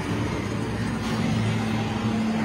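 A steady low droning hum under a noisy rumble, with two low pitches held evenly.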